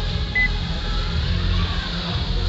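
Tap-card payment reader gives one short, high beep as a card is tapped on it, over a steady low background rumble.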